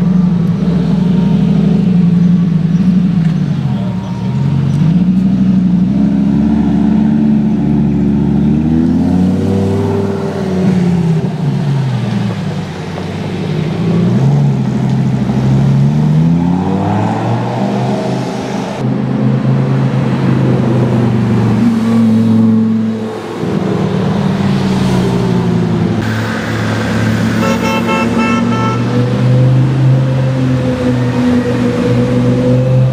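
Lamborghini Gallardo's V10 engine revving up and down again and again, its pitch rising and falling. A car horn sounds near the end.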